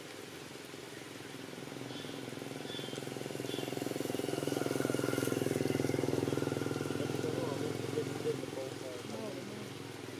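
An engine passing by, growing louder to a peak about halfway through and then fading. There are a few short chirps early on and wavering calls or voices near the end.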